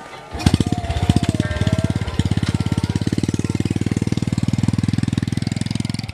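Small underbone motorcycle engine starting up about a third of a second in and running with a rapid, even pulse as the rider pulls away.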